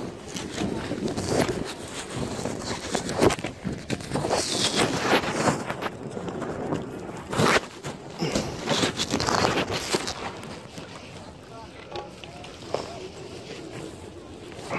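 Wind buffeting a phone's microphone in uneven gusts, strongest in the middle, with indistinct voices under it.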